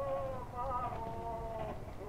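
Operatic male voice singing held notes from an early gramophone record played on a Victor horn gramophone.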